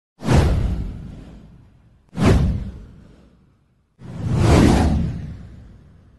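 Three whoosh sound effects of an intro sting, each a rushing swell that fades away over about two seconds. The first two hit suddenly; the third swells in more gradually.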